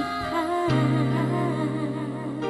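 Live dangdut band music through the stage PA: steady held notes under a wavering melody line.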